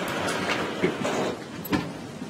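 Brown paper evidence bag crinkling and rustling as it is handled and opened, with a few sharper crackles, the loudest near the end.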